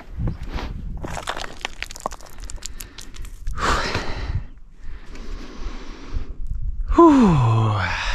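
A hiker's heavy breathing after a steep climb: scuffing clicks of steps on rock in the first few seconds, a loud gasping breath about halfway, and a long voiced sigh falling in pitch near the end.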